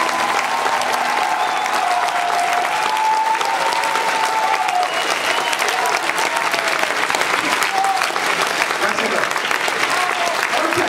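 Theatre audience applauding steadily at the end of a song, with some voices calling out from the crowd.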